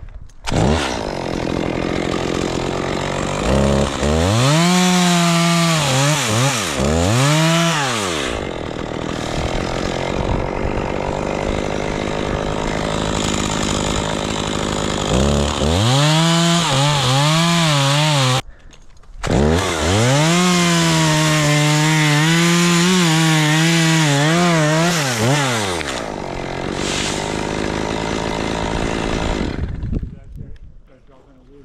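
Two-stroke chainsaw running in an oak, cutting wood: its engine revs up and falls back several times, with steadier stretches at high revs under load between. The sound cuts out briefly about halfway through, then picks up again.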